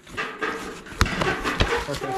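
Cardboard box flaps being pulled open by hand, tape tearing and cardboard rustling, with a sharp crack about a second in.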